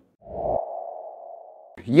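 Electronic sonar-like ping tone from a sound effect: a single mid-pitched tone that sets in with a soft low thud a fraction of a second in and fades away over about a second and a half before speech cuts back in.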